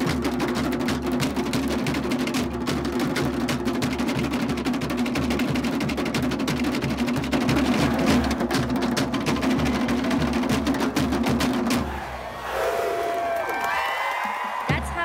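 Fast Tahitian drum music for ori tahiti dancing: rapid rolls on wooden to'ere slit drums over a steady low drum. The drumming stops about two seconds before the end.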